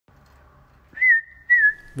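Two whistled notes at one high pitch: a short one about a second in, then a longer one that dips slightly and comes back up.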